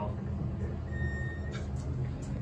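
Elevator car travelling with a steady low rumble, and a single electronic beep about a second in, lasting about half a second.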